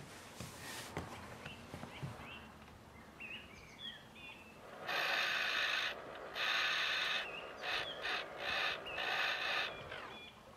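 Birds chirping faintly in a garden. From about halfway through comes a series of louder harsh rasping sounds, two of about a second each and then several shorter ones; their source is unclear.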